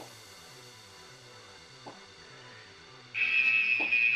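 Quiet background workout music with a steady, repeating bass line. About three seconds in, a loud harsh buzzer starts and holds one steady high tone: the interval timer signalling the end of the exercise.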